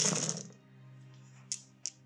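A large handful of small plastic six-sided dice rattling as they are thrown and scatter across a gaming mat, followed by two single light clicks about a second and a half in.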